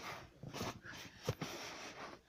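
Soft breathing and handling rustle close to the microphone, with one short, soft slap about a second and a quarter in as a slap bracelet snaps around a wrist.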